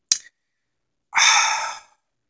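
A man's breath: a brief click just at the start, then about a second in a sigh, a breathy exhale lasting under a second, as he hesitates mid-sentence.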